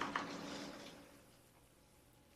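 Raw corn kernels poured into a pan of hot oil: a brief sizzle and patter that fades out about a second and a half in.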